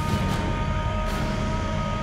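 A pack of 85cc two-stroke motocross bikes held at high revs on the starting gate, a steady massed whine with a low rumble beneath.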